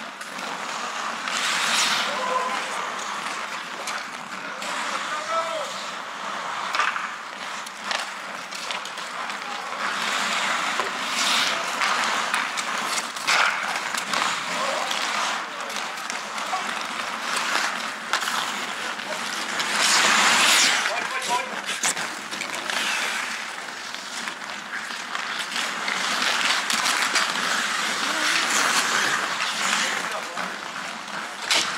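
Ice hockey skate blades scraping and carving on the ice during play, with sticks and puck clattering and players' voices calling out now and then. The loudest scraping comes about twenty seconds in.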